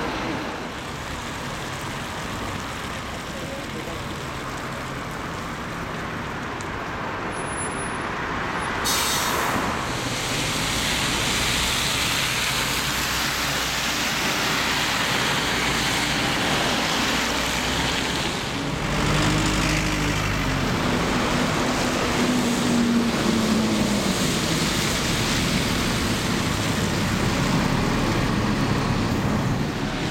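Road traffic noise, with a diesel bus engine pulling away about two-thirds of the way in, its note rising and then falling.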